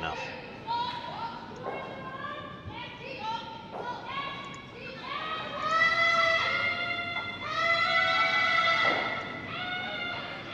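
Curlers shouting a series of drawn-out sweeping calls across the ice as a stone is delivered, the longest and loudest calls held from about halfway through.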